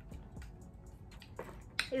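Quiet room tone with a few faint clicks, then two sharper clicks near the end, just before a woman starts speaking.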